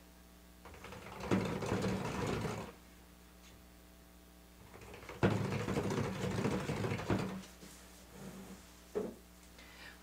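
Electric stick blender run in two short bursts of a couple of seconds each, its motor humming as the blade churns cold process soap batter in a plastic pitcher. It is pulsed between stirs to bring the oils and lye to trace.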